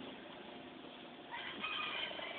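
Quiet outdoor background, then a faint, thin high call like a bird's in the second half.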